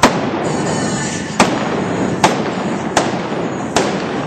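Five gunshots from a single-action revolver firing black-powder blanks at balloon targets during a cowboy mounted shooting run. The first is at the very start and the rest come at uneven intervals of about one second.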